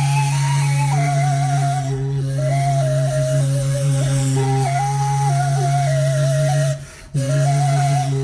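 Sybyzgy, the Kazakh end-blown flute, playing a kui: a stepping melody over a steady low drone, with a short break near the end before the tune resumes.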